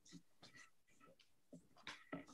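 Near silence with faint, scattered clicks and rustles.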